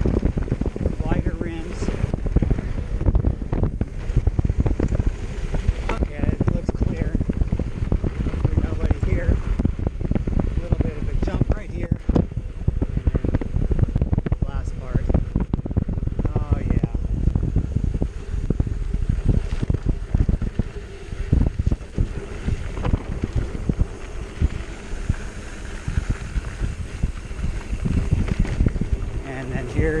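Hardtail mountain bike rattling down a rocky dirt descent: tyres crunching over loose stones and the bike clattering over the bumps in a quick, uneven series of knocks. Wind buffets the microphone throughout.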